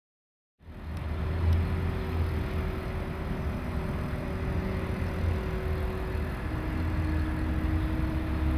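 Small engine-driven grounds machine running steadily at constant speed: a low rumble with a steady hum that steps slightly lower in pitch about six seconds in. It starts suddenly about half a second in.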